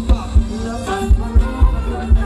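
Thai ramwong dance band playing, with a heavy, steady bass-drum beat under a melody line.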